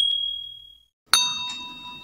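Chime sound effects for a subscribe-and-notification-bell animation: a high ding fading out, then a second, fuller chime with several ringing tones a little over a second in, fading away.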